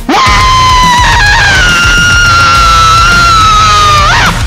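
Metalcore song with one long, held, screamed vocal note that steps up in pitch about a second in, over distorted band backing with drums.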